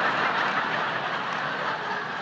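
A large audience laughing together, a steady wash of many voices that eases off slowly.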